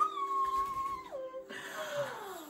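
A woman's long, high-pitched squeal, muffled into a pillow: held steady for about a second, dropping lower, then sliding down in pitch near the end.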